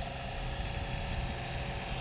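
Air lance blowing debris, dust and moisture out of a pavement crack: a steady hiss with a low steady hum underneath.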